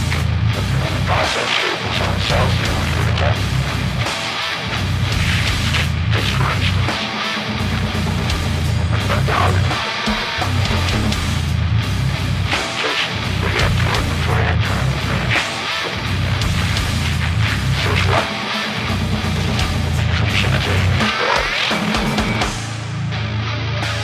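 Brutal death metal/goregrind: heavily distorted guitars, bass and drums playing a dense riff, with the low end cutting out briefly every few seconds in stop-start breaks.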